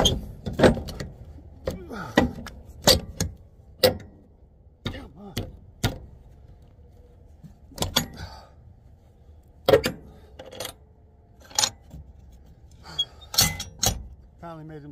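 Irregular sharp clicks and knocks, several in quick pairs, as a handheld phone is swung about and a jacket sleeve brushes across its microphone.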